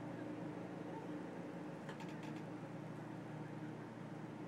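A steady low mechanical hum, with a quick cluster of small clicks about two seconds in.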